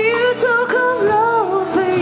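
Live band music: a wavering melody line over steady held chords.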